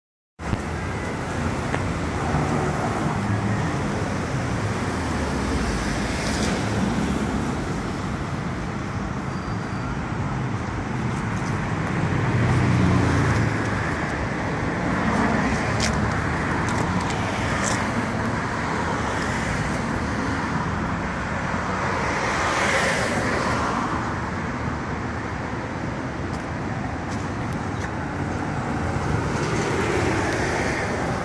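Steady street traffic noise with vehicles passing, swelling louder around the middle and again later on.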